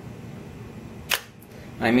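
Nikon DSLR's mirror flipping up into lock-up for sensor cleaning: one sharp mechanical click about a second in, followed by a fainter click.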